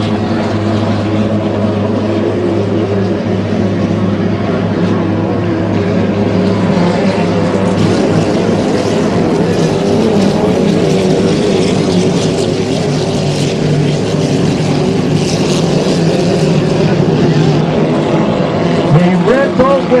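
Engines of 2.5-litre class racing hydroplanes running hard on the race course, a loud, steady, many-toned drone.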